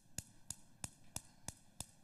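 Gas hob's electric spark igniter clicking in a steady, even series, about three faint clicks a second, while the burner knob is held in.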